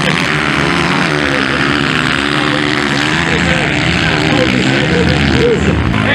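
Motocross motorcycle engines revving on a dirt track, their pitch rising and falling with the throttle.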